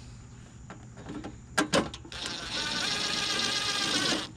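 Two sharp clicks, then a cordless impact driver running for about two seconds with a steady whine and rattle before stopping.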